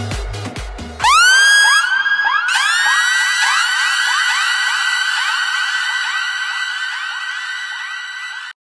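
Afro house DJ mix: the beat with its kick drum runs for about the first second, then drops out and gives way to an electronic effect of rising tones that glide up and hold, repeating over and over with echo. The effect is loudest as it comes in and slowly fades.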